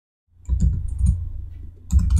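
Computer keyboard and mouse clicks: a quick, uneven run of clicks with dull thumps, starting about a third of a second in, as line lengths are typed and points picked in AutoCAD.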